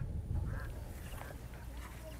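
Outdoor ambience with a steady low rumble and a few faint, short animal calls about half a second to a second and a half in.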